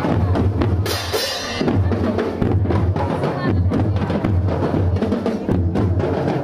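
School marching drum band playing on the move: bass drums pound a steady march beat under rapid snare-drum strokes, with a brief crash about a second in.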